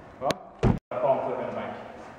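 Two sharp knocks of a stunt scooter hitting a plywood skatepark ramp, the second heavier. The sound cuts out for an instant at an edit, and faint talking follows.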